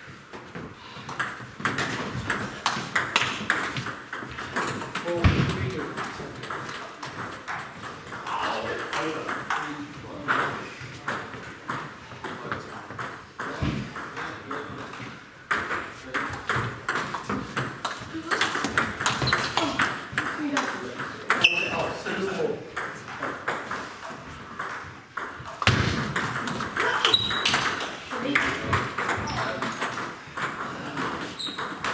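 Table tennis balls being hit in rallies: a quick run of sharp clicks of the celluloid-type ball on bats and table, broken by short pauses between points, from more than one table at once.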